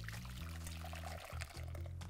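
Freshly boiled black tea poured from a stainless-steel saucepan through a fine mesh strainer into a glass bowl: a soft, steady trickle of liquid being strained. Quiet background music plays beneath.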